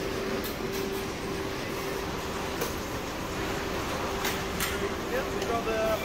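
Steady machinery hum of an industrial dismantling hall, with one constant tone, and a few scattered clicks and knocks from work at the benches.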